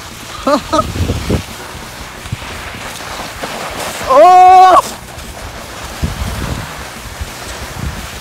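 Snow hissing and scraping under a person glissading on their backside down a snow slope. There is a short laugh near the start and a loud held yell about four seconds in.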